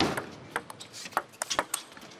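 Table tennis rally: the celluloid-type ball clicking sharply off the rubber-covered bats and the table top in quick succession, several hits a second.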